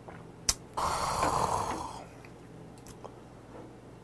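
A small metal shot cup clicks down on the wooden table, then the drinker lets out a loud, raspy exhale of about a second after downing a shot of soju.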